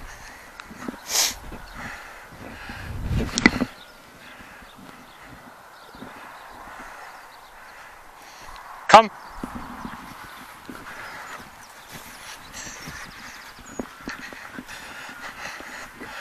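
Faint open-field ambience with a Labrador running over the grass on a retrieve, and short rustling bursts of wind or handling noise in the first few seconds.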